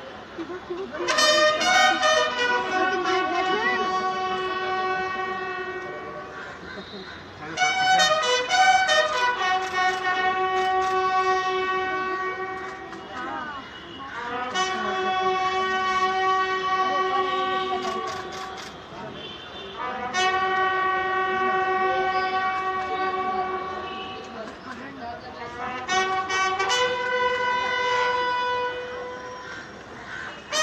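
Bugles sounding a slow ceremonial funeral call. It comes in phrases of long held notes, each opening with a quick run of short notes, with a new phrase about every six seconds.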